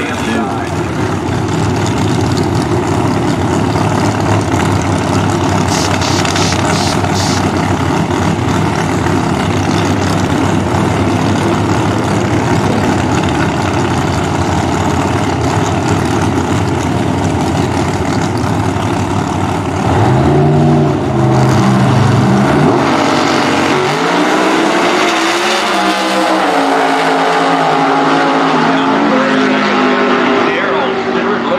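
Two Pro Outlaw 632 drag cars' big-block V8s running at the starting line, then launching about twenty seconds in, with the pitch climbing through the gear changes as they pull away down the track.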